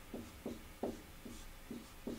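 Dry-erase marker writing on a whiteboard: a run of short quick strokes, about five in two seconds, as fractions are written out.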